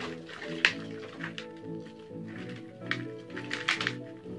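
Background instrumental music with held notes, over which come sharp crackling knocks and scrapes of hands loosening compacted soil from a serisa bonsai's root ball above a plastic tub. The sharpest knock comes just over half a second in, and a run of them comes near the end.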